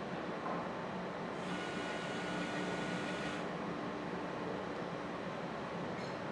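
Steady hum of a bottle measurement machine. A small motor whines for about two seconds as the turntable rotates the gallon jug under measurement, then stops.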